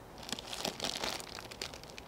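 Thin plastic bag of granular fertilizer pellets crinkling and rustling as a hand digs into it, with small clicks, for about a second.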